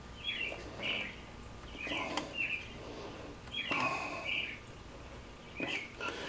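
A bird chirping faintly in short calls, about one every second or so.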